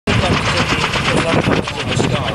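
Kaman HH-43 Huskie helicopter hovering, its intermeshing twin rotors beating in a loud, rapid, even chop.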